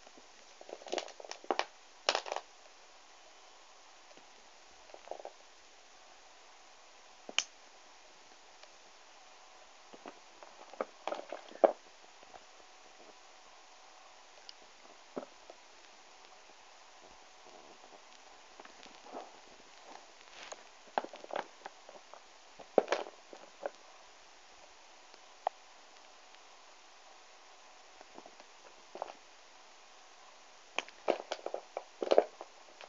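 Small novelty erasers clicking and rustling against each other as they are picked up and shuffled in a pile, in short irregular clusters with pauses of faint hiss between.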